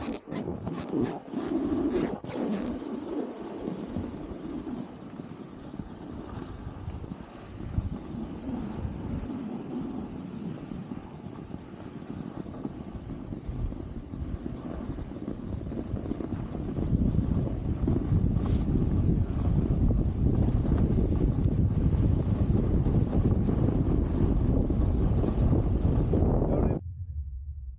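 Wind noise buffeting the camera's microphone while skiing down a groomed trail, a steady rushing rumble that grows clearly louder past the middle as the skier picks up speed. A few short knocks come in the first couple of seconds.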